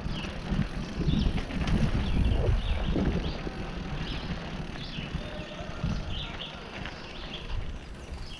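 Mountain bike rolling over a dirt and gravel trail, with uneven rumbling wind noise on a helmet-mounted camera; louder for the first three seconds, then quieter. Short high chirps come and go throughout.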